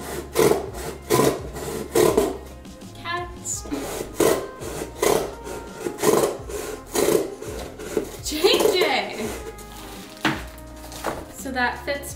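Scissors cutting through a cardboard box, a series of cuts roughly one every second.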